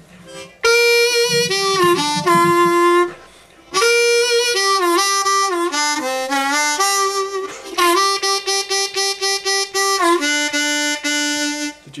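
Diatonic blues harmonica played solo and slowly, single notes lip-pursed, in two phrases with a short pause between. Several notes are bent down in pitch and released back up, among them two-hole draw bends, and the second phrase ends in a run of quick separate notes.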